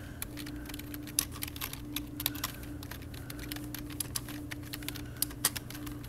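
Fast one-handed typing on a Logitech computer keyboard: a quick, irregular run of key clicks.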